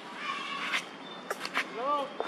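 Baby macaque crying: a short high call, then near the end an arching call that rises and falls in pitch, with a few sharp clicks in between.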